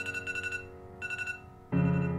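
Soft piano music, a held chord fading away, with an electronic alarm over it beeping in two quick bursts of rapid high beeps. Near the end a new, louder piano chord comes in.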